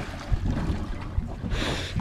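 Wind on the microphone and water noise around a small drifting boat at sea, a steady low rumble, with a short hiss near the end.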